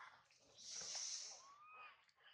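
Faint macaque calls: a hissy burst from about half a second in, lasting under a second, then a short thin rising squeak near the end.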